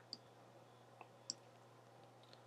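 Near silence broken by three faint, short clicks from a computer keyboard and mouse in use, one just after the start and two more close together about a second later.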